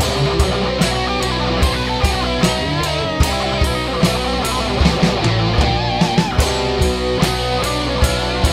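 Traditional doom metal song: distorted electric guitars and bass over a drum kit, with a lead guitar melody whose pitch wavers and bends about three-quarters of the way through.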